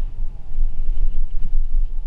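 Wind buffeting the microphone of a helmet-mounted camera, with tyre rumble from a mountain bike rolling fast downhill on tarmac: a loud, uneven low rumble.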